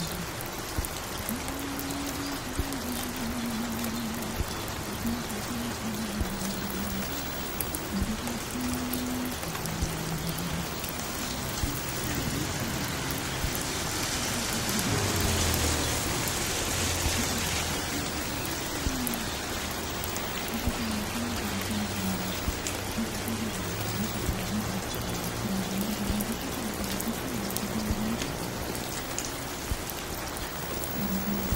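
Steady rain, with low, muffled music playing underneath and small clicks scattered through it. About halfway through, a louder wash of noise with a falling tone rises and fades.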